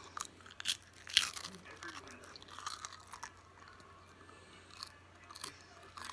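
A person biting and chewing a crunchy snack close to the microphone: sharp crunches, the loudest about a second in, then quieter crunching in bursts.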